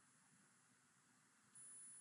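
Near silence: faint recording hiss, with a faint, thin, high-pitched steady tone coming in about one and a half seconds in.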